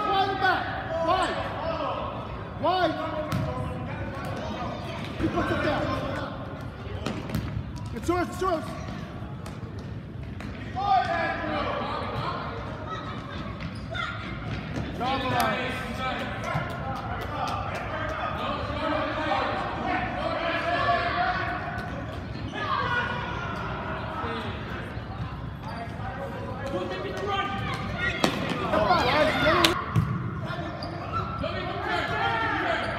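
Children's and spectators' voices shouting across an echoing gymnasium during an indoor soccer game, with scattered thuds of the ball being kicked and bouncing on the hard gym floor; a flurry of shouts and kicks swells near the end.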